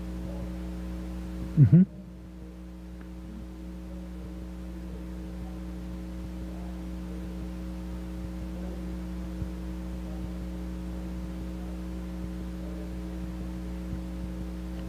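Steady electrical mains hum on the recording, a few fixed low tones held throughout, with one brief loud burst about two seconds in and faint, distant speech underneath.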